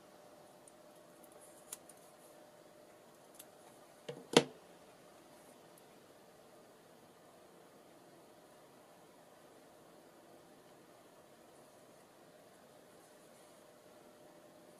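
Quiet handling of paper pieces on a craft mat, with a couple of light clicks and one sharp click about four seconds in, over a faint steady hum.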